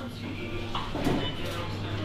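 Supermarket ambience: a steady low hum with faint background voices, and a couple of light clicks or clatters about a second in and again shortly after.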